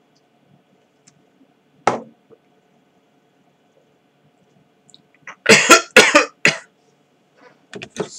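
A man coughing in a quick burst of about four coughs some five and a half seconds in, after one short sharp sound about two seconds in. He says he may have a cold.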